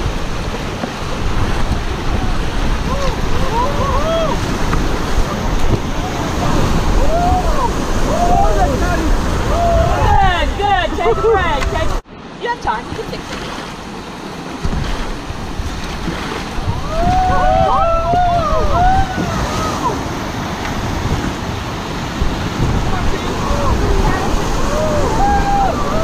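Whitewater rapids rushing loudly around an inflatable raft, with wind buffeting the microphone. Rafters let out rising-and-falling whoops and shouts at several points, and the sound cuts off abruptly for a moment about twelve seconds in.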